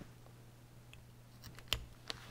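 Tip of a carving knife cutting small stop cuts into a basswood stick, faint, with a single sharper click about three-quarters of the way through.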